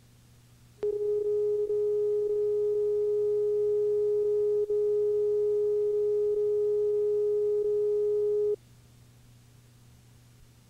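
Steady electronic reference tone played under a commercial's slate card on videotape: one unwavering mid-pitched beep that starts about a second in and cuts off suddenly near the end, with a few brief flickers in it.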